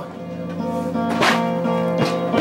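Toy guitar music: a simple tune of steady held notes that step in pitch, with one strummed stroke a little over a second in.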